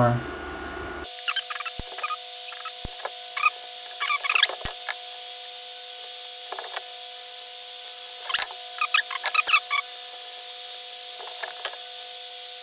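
Soldering a row of header pins on a printed circuit board: scattered short ticks and crackles from the iron tip and melting solder and flux on the pins, coming in small clusters over a faint steady hum.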